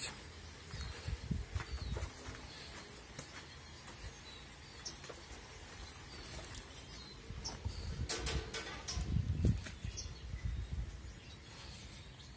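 Small songbirds chirping in short, scattered calls, with rustling and low thumps of movement about eight to ten seconds in.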